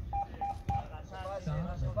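Three short electronic beeps, about a quarter second apart, from a Course Navette beep-test recording: the triple signal that marks the start of a new level, here level 12. A man's voice follows from about a second in.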